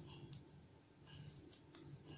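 Near silence: faint room tone with a steady high-pitched whine and a few faint small ticks.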